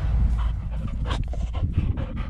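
English springer spaniel panting as it runs up carrying a tennis ball, in short repeated breaths through the second half, over a steady low rumble.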